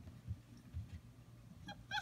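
Five-week-old basset hound puppy giving a few quick high squeaks near the end, over faint soft thumps.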